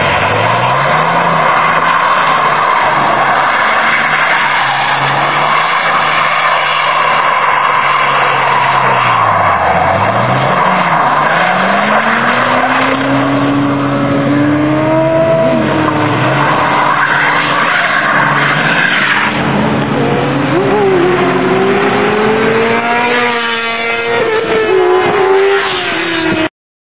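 Dodge Ram pickup's 6.7 Cummins inline-six turbo-diesel doing a burnout, its tyres spinning and squealing on the asphalt. The engine pitch rises and falls, dips low about ten seconds in, then climbs again.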